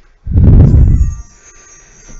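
A heavy breath blowing into a headset microphone during exercise: one loud, low rush lasting about a second, starting just after the beginning.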